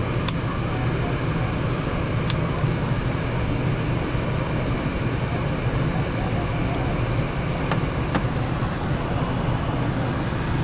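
Ruud Achiever furnace blower running: a steady low hum under a rush of air, with a few light clicks.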